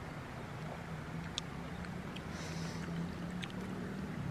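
Shallow river running steadily over stones, with a faint low hum underneath and a few faint clicks.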